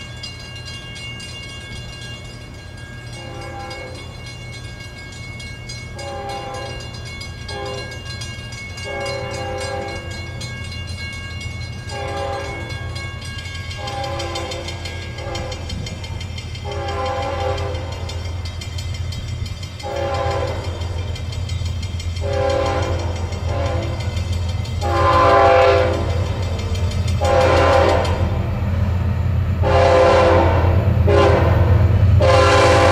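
Approaching Florida East Coast Railway freight train led by GE ES44C4 diesel locomotives. Its multi-chime air horn sounds a long series of long and short blasts for the grade crossings, getting louder as it nears. Under it is a steady diesel rumble that rises, and a grade-crossing bell rings.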